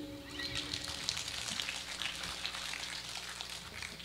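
Audience applauding after the song, with the band's last chord ringing out and fading in the first second.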